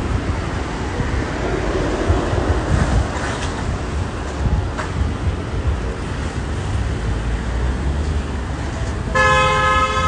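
Steady rumble of street traffic outdoors. Near the end, a vehicle horn sounds once for under a second.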